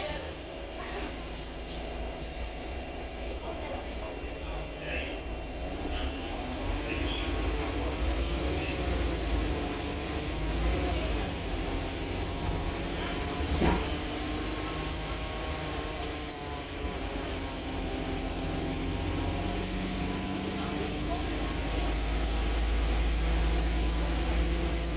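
Volvo B8RLE single-deck bus heard from inside the cabin while driving: its 7.7-litre six-cylinder diesel and drivetrain give a steady low rumble, with whines that rise and fall as the bus speeds up and slows. A single sharp knock comes a little past halfway, and the rumble grows louder near the end.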